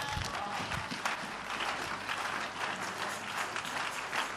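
A congregation applauding: many people clapping steadily.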